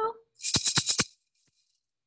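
A maraca shaken in a quick run of about six rattling shakes, lasting about half a second and starting about half a second in.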